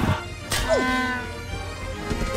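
A thump, then bagpipes giving a groaning note that slides down in pitch and settles into a low steady drone.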